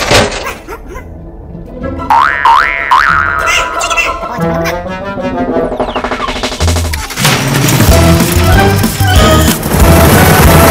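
Cartoon soundtrack: music mixed with comic sound effects, with quick rising glides about two to three seconds in and a fuller, louder passage from about seven seconds on.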